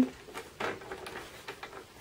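Light clicks and a brief soft rustle as card stock is handled and positioned on a plastic paper trimmer.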